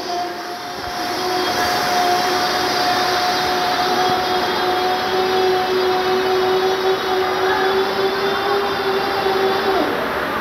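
A young contestant's voice holding one steady, unbroken note on a single breath for nearly ten seconds, dipping in pitch as the breath runs out just before the end: a longest-breath challenge, the hold lasting about nine seconds. A steady background din of the crowd runs underneath.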